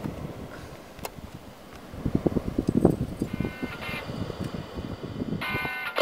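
Wind buffeting the microphone, with a sharp click about a second in as a button on a Memorex portable CD boombox is pressed. From about three seconds in, music comes in faintly from the boombox and gets louder just before the end.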